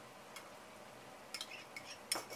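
Faint, scattered clicks of a metal spoon scraping against a ceramic bowl as thick yogurt is spooned out, over quiet room tone.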